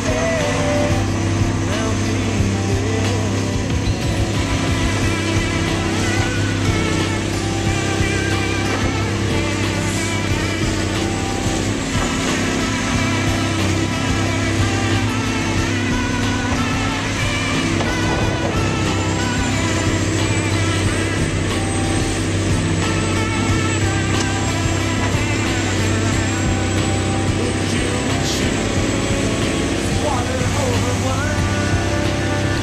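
Diesel engine of a Caterpillar 345B L tracked excavator running steadily with a deep, even hum.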